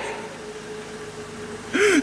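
A steady low hum fills a pause, then near the end a woman draws a sharp, gasping breath and lets out a short whimper as she starts to cry.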